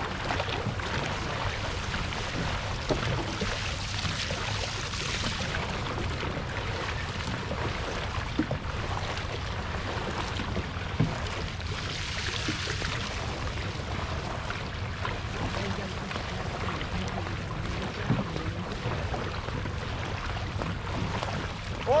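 Dragon boat gliding on calm water with paddles at rest: a steady rush of water and wind noise on the microphone, with a few faint knocks.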